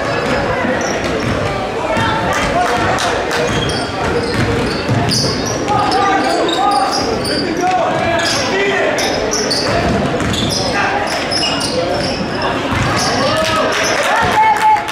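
Basketball being dribbled and players' shoes on the hardwood court of a gym during a game. Voices of players and spectators echo through the large hall, with many short, sharp high chirps scattered throughout.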